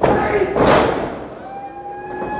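A heavy impact in a pro wrestling ring, with a wrestler's body hitting the canvas, loudest about two-thirds of a second in. It is followed by one long held shout.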